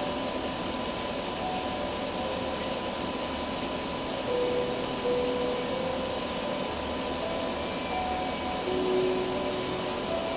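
Steady rushing hiss and hum of saltwater aquarium equipment, powerheads and filters moving water, with faint music in the background.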